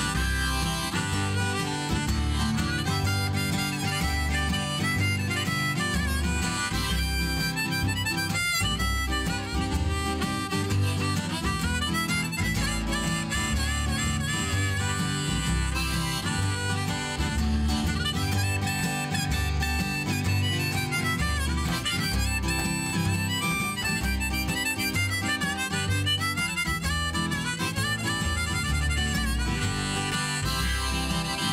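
A harmonica solo on a neck-rack harmonica over strummed acoustic guitar and plucked upright double bass, as the instrumental break between sung verses of a country-folk song.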